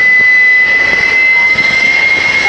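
Jet engine of a jet-powered school bus running hard with its brakes held: a loud, steady jet roar with a high whine that climbs slowly in pitch.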